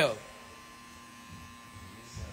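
Electric hair clippers running with a faint, steady hum as they are worked over the head.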